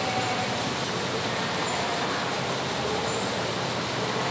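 Steady, even background noise: a constant rushing hiss with no change in level.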